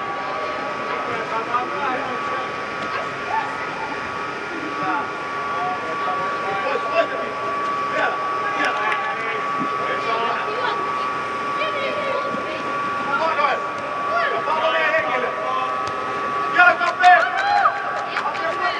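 Youth football match in a large air-supported dome: scattered shouts and calls from players echo around the hall, with an occasional ball kick. Under them runs a steady high hum.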